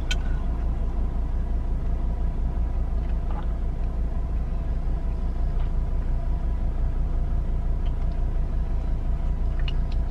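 Steady low rumble of a car heard from inside the cabin, with a faint steady hum above it.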